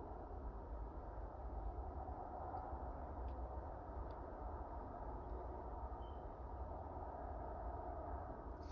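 Quiet outdoor background: a steady low rumble and hiss, with a few faint ticks in the middle.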